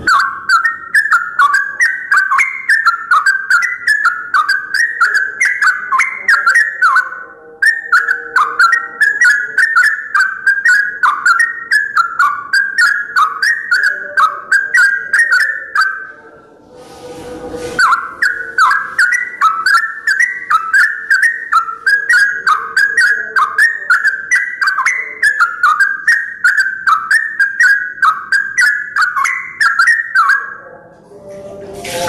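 Caged yellow-vented bulbul singing loudly: long runs of quick, bubbling whistled notes that rise and fall, with two short pauses, about a third and about halfway through.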